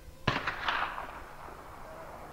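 A black-powder rifle shot cracks out about a quarter second in, followed by a rolling echo that dies away over about a second.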